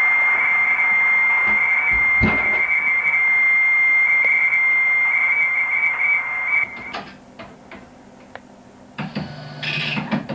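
Radio receiver hiss with a steady high whistle running through it, cutting off about seven seconds in. After that come a few faint clicks and a brief louder noise near the end.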